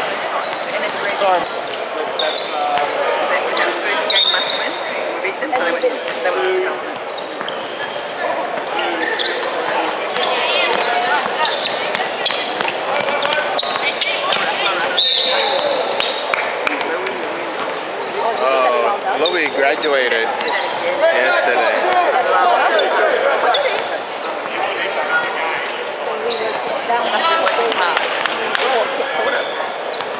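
Indoor basketball game: a basketball bouncing on a hardwood court amid the voices of players and spectators, echoing in a large hall, with many short sharp knocks throughout.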